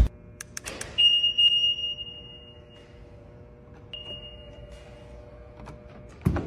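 A sharp thump, a few clicks, then a high electronic ping chime that rings and fades over about a second and a half, followed by a second, shorter ping near four seconds in.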